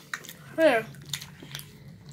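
Close-miked chewing and biting of food, with scattered small mouth clicks, and one brief falling vocal sound about half a second in.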